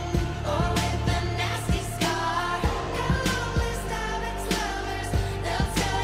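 Live pop performance: a woman singing lead over a steady drum beat.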